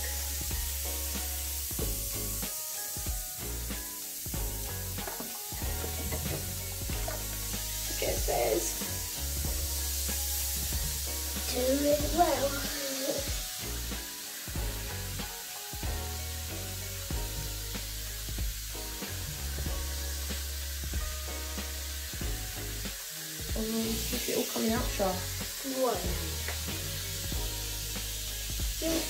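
Homemade bath bomb fizzing as it dissolves in a sink of water: a steady crackling hiss.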